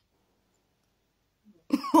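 Near silence, then a woman's short cough near the end that runs straight into her speaking again.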